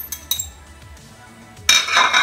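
Metal cutlery knocking and scraping against ceramic dishes: a couple of light clinks at first, then a louder, ringing scrape near the end.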